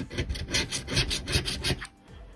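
A gold coin scraping the scratch-off coating off a lottery ticket in quick back-and-forth strokes, about five or six a second, stopping just before the end.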